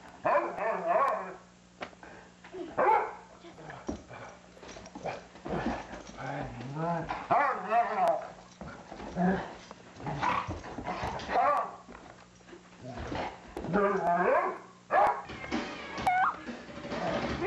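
Two dogs, one of them a Doberman, play fighting, with repeated short barks and growling vocalisations coming in bursts throughout.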